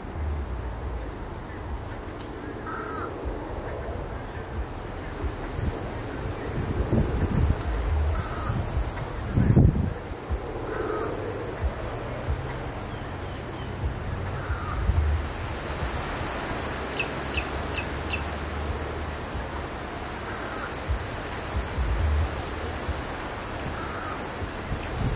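Short harsh bird calls, one every few seconds, over a steady low rumble, with a single heavy thump about halfway through.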